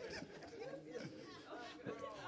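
Faint chatter: quiet, indistinct voices of people in the room, with no other sound standing out.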